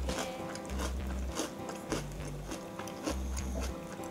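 Close-up chewing and crunching of Choco Bits cereal in milk, several sharp crunches over a few seconds, with background music that has a repeating bass line.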